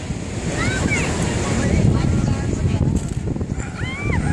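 Wind buffeting the phone's microphone over the steady wash of ocean surf.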